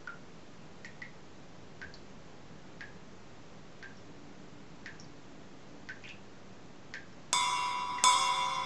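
A tap dripping into a ceramic washbasin, about one short pitched drop a second, sometimes two close together. About seven seconds in, loud chiming, bell-like music starts abruptly and drowns it out.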